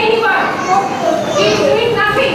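Children's voices speaking in a classroom.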